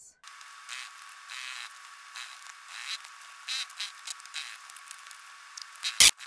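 Sewing machine running while topstitching along a bag's zipper edge: a thin, steady whine with a hiss that swells and fades in short spells.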